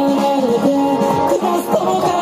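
A solo singer performing a rock song with an electric guitar played through a small amplifier, the voice carrying the melody in sustained, sliding notes over the guitar.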